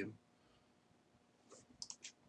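Mostly near silence, then a few quick computer mouse clicks near the end.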